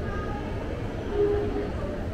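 Shopping mall ambience: a steady low rumble of building machinery with faint, indistinct voices of shoppers.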